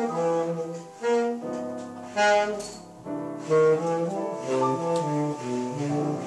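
Saxophone and piano playing jazz together: the saxophone carries a melodic line over piano chords, which come in with sharp attacks about once a second.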